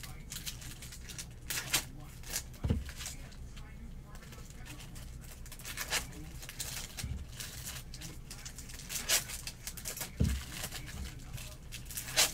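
Foil wrappers of Bowman Chrome trading-card packs being torn open and cards handled, with scattered quiet rustles and crinkles. A few soft thumps come from cards being set down on the table.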